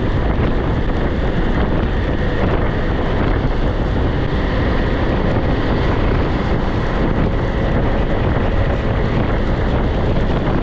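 Wind rushing over the camera microphone of a motorcycle ridden at road speed in the rain, a steady, dense noise that buries the engine.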